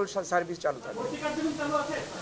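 A man speaking, then from about a second in softer voices under a steady hiss.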